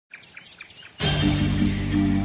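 A few short bird chirps, quiet, then music with sustained tones starts abruptly about a second in and takes over.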